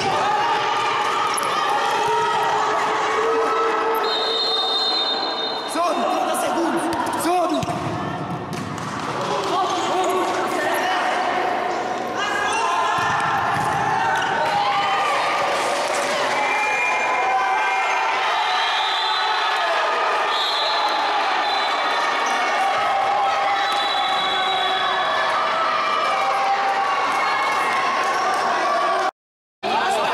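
Many young players and spectators shouting and calling out at once in a reverberant sports hall, with a futsal ball bouncing and being kicked on the wooden court.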